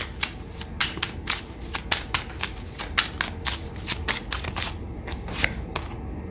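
A deck of tarot cards being shuffled by hand: a quick, irregular run of card clicks and snaps that thins out over the last couple of seconds.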